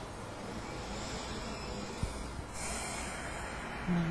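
Quiet room noise with a faint click about two seconds in, then a soft breath out lasting about a second.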